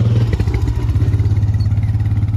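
Four-wheeler (ATV) engine running steadily close by, loud and even.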